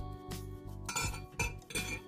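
Light clinks against the ceramic crock of a slow cooker as pork chops are set into the bottom, three short clinks in the second half. Background music with steady held notes plays underneath.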